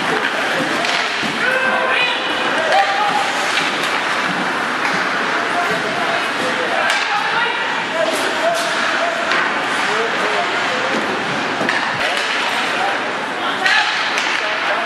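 Many spectators' voices talking and calling out at once in an ice hockey arena, with a few sharp knocks of sticks and puck on the ice and boards.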